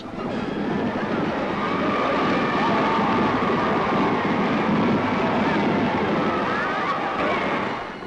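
Large racecourse crowd cheering and shouting during a horse race finish, a dense roar of many voices that swells over the first couple of seconds, holds, and drops away near the end.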